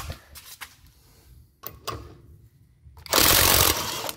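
Impact wrench hammering in one short burst about three seconds in, under a second long, spinning a wheel-lock lug nut off an alloy wheel. A few light metal clicks come before it as the socket is fitted onto the lock.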